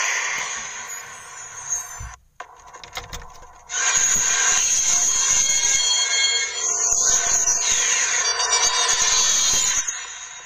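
Channel intro: a hissy music and sound-effect bed under animated title cards. It drops out briefly about two seconds in, comes back louder about four seconds in with gliding tones, and cuts off sharply near the end.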